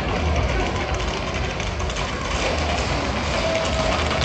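Street crowd din mixed with the hooves of galloping Camargue horses on asphalt, the clatter growing louder as the riders approach near the end.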